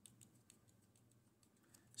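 Near silence with faint, scattered light clicks from a small screwdriver working the pivot screw of a CRKT Fossil folding knife, as the knife is reassembled and its blade recentered.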